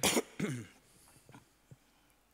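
A man clearing his throat: a sharp rasp, then a short voiced hum that falls in pitch, followed by two faint clicks.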